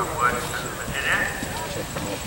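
A horse's hoofbeats cantering on grass, with indistinct voices talking in the background.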